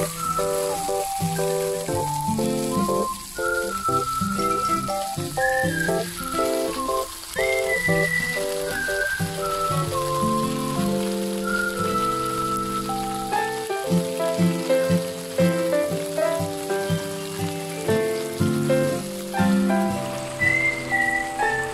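Background music with a melody line, over the steady sizzle of stuffed squid frying in an oiled pan.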